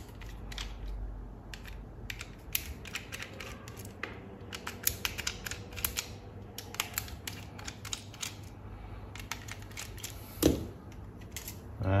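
Irregular light clicks and taps of a small screwdriver on screws and the plastic housing of an electric shaver being taken apart, densest through the middle. A brief vocal sound near the end.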